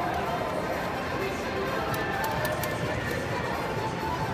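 Bier Haus video slot machine playing its free-spin bonus music and reel sounds during a spin, over casino background chatter. A quick run of sharp clicks comes about two seconds in.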